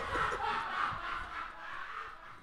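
Soft, breathy laughter from a man close to the mic, fading out over the two seconds.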